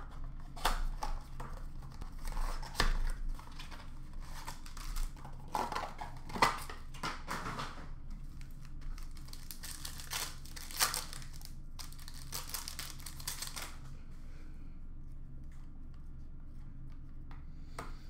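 Plastic-wrapped trading card packs and a cardboard blaster box being opened by hand: wrappers crinkling and tearing in irregular bursts with a couple of sharp clicks, quieter near the end as the cards are handled.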